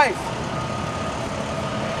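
Steady noise of road traffic passing on the street.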